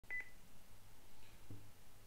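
A short, high electronic beep with a click either side, right at the start. After it comes a faint, low, steady hum.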